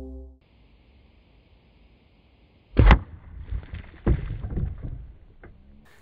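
Background music fading out at the start, then a single sharp thump about three seconds in, followed by lighter knocks and rustling handling noises.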